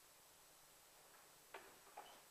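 Near-silent room tone, then two short footsteps about half a second apart near the end.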